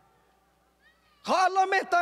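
A man's impassioned lecture voice through a PA system. The echo of his last phrase dies away into near silence, then about a second in he resumes loudly with drawn-out vowels.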